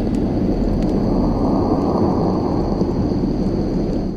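Dense low rumbling wash with a faint steady high whine above it, as a heavy metal track with its lead guitar removed rings out at its end.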